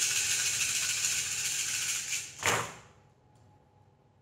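A handful of divination pieces shaken in cupped hands, a steady rattle for about two seconds, then cast down onto a cloth-covered table about two and a half seconds in with one dull clatter. A few faint clicks follow as the pieces are handled.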